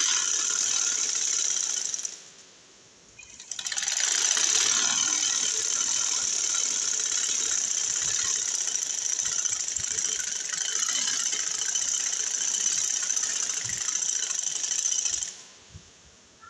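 Sewing machine running as it stitches a seam in cloth, a steady mechanical whirr. It stops briefly about two seconds in, then runs again for about twelve seconds and stops shortly before the end.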